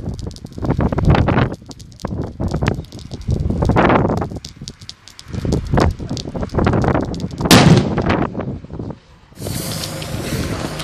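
Wind buffeting the microphone while a lit Cobra 6 firecracker's fuse burns, then a single sharp bang about seven and a half seconds in. Near the end a steady hiss of another fuse burning takes over.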